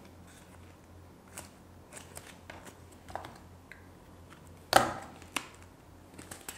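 Faint rustling and light clicks of a handmade artificial flower's petals being handled and arranged, with one sharper rustle a little under five seconds in, over a low steady hum.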